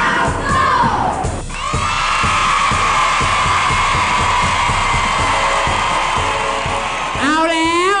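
A large crowd of children shouting and cheering together over background music with a steady beat. A man's voice comes in near the end.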